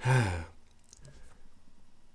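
A man's short, exasperated sigh, sliding down in pitch, about half a second long.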